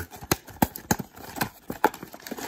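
A thin cardboard trading-card hanger box being torn open by hand along its perforated tab: a series of about five sharp snaps as the perforations give way.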